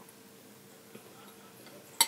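Quiet room with a faint steady hum and a few soft ticks, ending in one sharp clink of a spoon against a ceramic cereal bowl.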